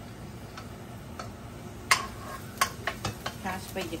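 Minced garlic sizzling in hot oil in a wok while a spatula stirs it, with a few sharp clicks and scrapes of the spatula against the pan in the second half.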